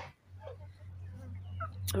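Faint, scattered short peeps from a group of two-month-old muscovy ducklings, over a low steady hum.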